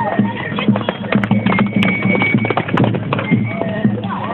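Hooves of horses galloping past on a dirt road, a quick run of hoofbeats.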